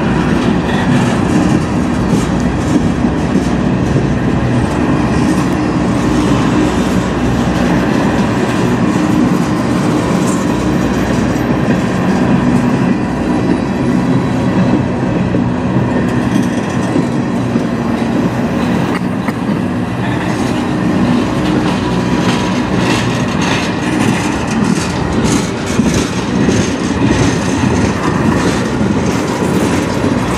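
Freight cars of a passing manifest train (covered hoppers, gondolas and tank cars) rolling by close at hand: a loud, steady rumble of steel wheels on rail, with frequent clicks as the wheels cross rail joints.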